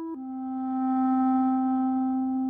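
Unaccompanied solo clarinet: a brief note, then a step down to a lower note that is held long and swells in loudness.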